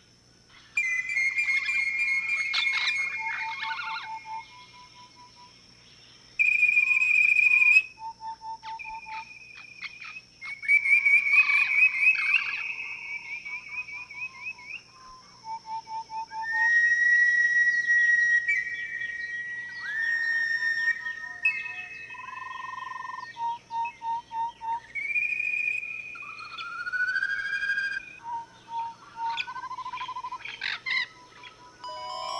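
Stylised, whistle-like bird calls of an animated-film soundtrack: held whistled notes, short runs of evenly spaced beeps and quick chirps, coming in stop-start phrases.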